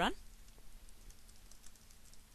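Computer keyboard typing: a few faint, scattered keystrokes.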